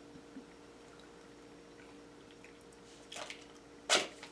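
Quiet room tone with a faint steady hum, a few soft small noises about three seconds in, and a short sharp click just before the end.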